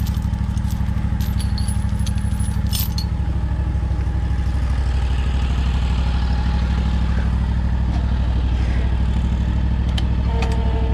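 Ventrac 4500P compact tractor engine idling steadily. Steel chain links clink several times during the first three seconds as the chain is handled.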